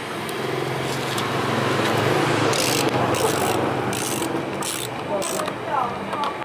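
A screwdriver scraping and turning a screw in a motorcycle's plastic body panel, with a run of short rasping strokes through the second half.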